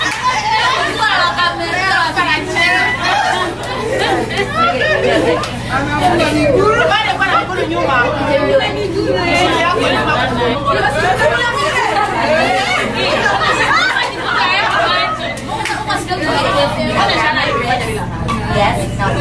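Several people talking over one another in lively group chatter, with a steady low hum beneath.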